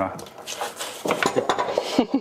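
Chunks of chopped vegetables clattering as they are scraped out of a ceramic bowl and dropped into a steel pot of boiling water: a run of quick knocks and clicks against the bowl and pot.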